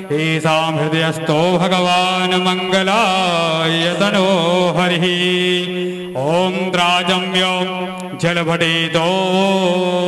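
A male voice sings a devotional bhajan in long held notes that glide and waver in pitch, with a brief break about six seconds in.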